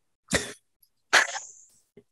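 Two short cough-like vocal bursts spoken close into a desktop condenser microphone that is being held the wrong way round.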